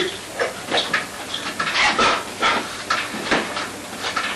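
A telephone being dialed: a run of short separate sounds, about two or three a second.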